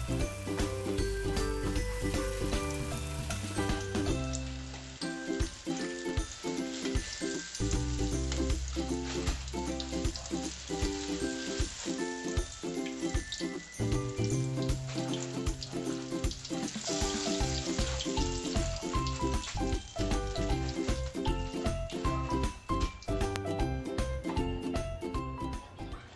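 Breadcrumb-coated bananas deep-frying in hot oil, a steady bubbling sizzle, with background music playing over it.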